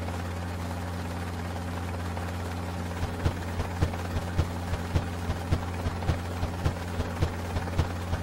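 Cartoon helicopter sound effect: a steady low engine drone, joined about three seconds in by regular rotor thumps, about four a second.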